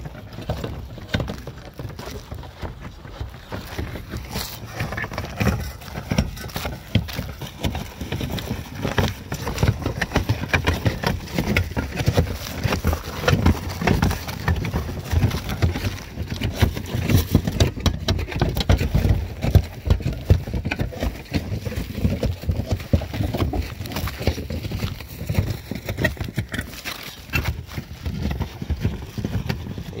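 Irregular knocking, scraping and rustling with a low rumble throughout, the handling noise of asphalt shingles and a handheld camera being moved about close to the microphone.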